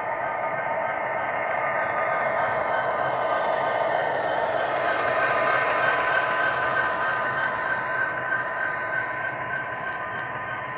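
Model diesel locomotive and covered hopper cars rolling past close by, a steady whine over the rumble of wheels on the rails. It grows louder toward the middle as the cars pass and eases off near the end.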